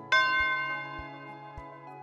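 A bell-like chime struck once just after the start and ringing slowly away, marking the end of the quiz's countdown before the answer is revealed. Soft background music continues underneath.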